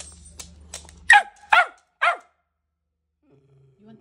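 Small fluffy white dog barking three short times, about half a second apart, starting about a second in. The owner takes the barking as the dog asking to go out.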